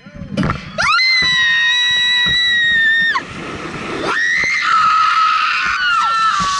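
Riders screaming as the freefall swing drops them over the cliff edge into the canyon. One long high scream rises at its start and is held for about two seconds, then a second long scream begins about four seconds in, over a rushing wind noise.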